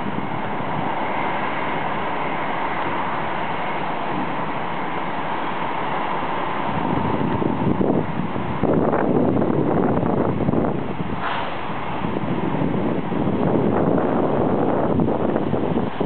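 Steady rushing noise of a distant jet airliner's engines, louder and rougher from about seven seconds in, with wind buffeting the microphone.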